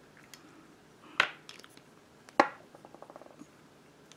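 Two sharp clicks about a second apart, the second followed by a short run of faint quick ticks: small handling noises of makeup items being worked with.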